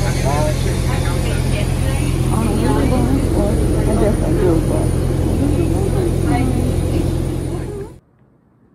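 Steady low drone of an airport shuttle bus heard from inside the cabin while it drives, with other passengers' voices talking over it. The sound cuts off abruptly at the end.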